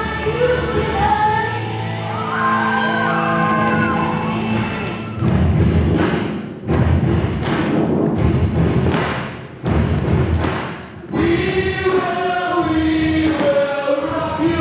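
An ensemble of voices singing together with musical accompaniment. In the middle, heavy regular beats, a little more than one a second, take over beneath the voices before the singing comes back to the fore near the end.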